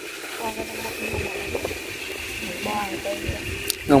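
A faint voice speaking from some distance, answering in short phrases, over a thin steady high-pitched whine. There is a single click near the end.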